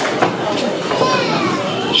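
Several children's voices chattering and calling at once.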